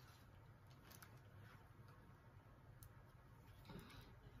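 Near silence with faint sounds of tarot cards being spread on a table: a few soft ticks and a brief slide near the end.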